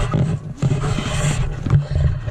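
A basketball bouncing a few times on an outdoor asphalt court, sharp knocks under a loud, rough rushing noise that swells from about half a second in and eases off about a second later.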